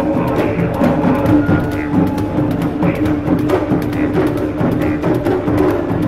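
Didgeridoo drone held at a steady low pitch over dense, driving taiko drumming, played live.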